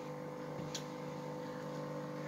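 Quiet room with a steady low electrical hum and one faint click about three-quarters of a second in.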